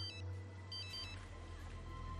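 Mobile phone text-message alert: a short electronic chime of stepped high tones, sounding twice about a second apart, announcing an incoming text.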